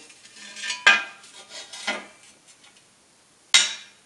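Steel bar and packing blocks being set down and shifted on the cast-iron bed of a fly press: a few metal clanks with short ringing, one about a second in, another about two seconds in and a sharp one near the end.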